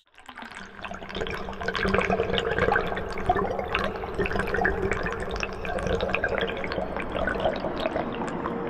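Bubbling, dripping water fading in over the first second, full of small pops and clicks, with a low steady hum beneath.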